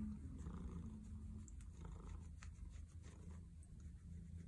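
Tabby cat purring steadily as it is scratched and stroked: a low, even, pulsing rumble of a contented cat.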